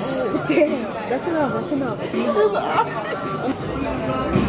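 Voices talking and chattering at a restaurant table, with other diners' chatter around them.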